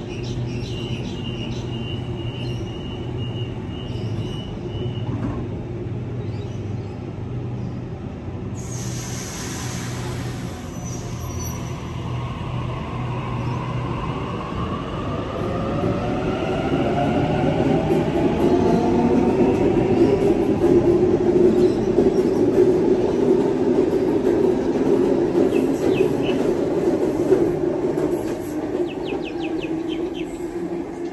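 Double-deck Sydney Trains electric train departing a platform. A steady hum and a high tone come first, then a burst of hissing air about nine seconds in. After that, the motors whine, rising in pitch and growing louder as the train picks up speed and runs past, then fading near the end.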